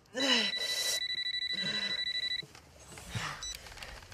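Telephone ringing: one rapid electronic trill lasting about two seconds, starting just after the beginning and cutting off about halfway through.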